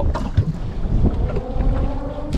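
Wind buffeting the microphone on a fishing boat, a loud low rumble with a few short knocks, and a faint steady whine in the second half.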